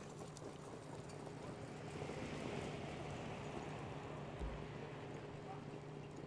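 Faint racetrack ambience from a harness-racing broadcast: a steady low hum under a soft wash of background noise, with one dull thump about four and a half seconds in.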